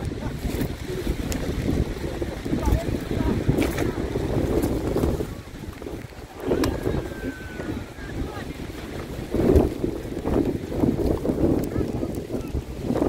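Wind buffeting the microphone with an uneven low rumble, under faint distant shouts from players on the pitch.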